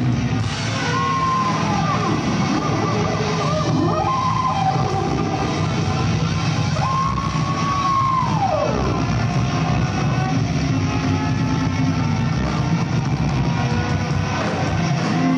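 Ska-punk band playing loud live: electric guitar, bass and drums with a horn section, heard from the crowd. Three long high held notes slide down in pitch, about one, four and seven seconds in.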